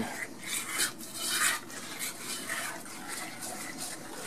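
A utensil stirring thick, glossy chocolate brownie batter in a stainless steel saucepan, a wet scraping against the pan in uneven strokes as an egg yolk is worked into the warm chocolate mixture.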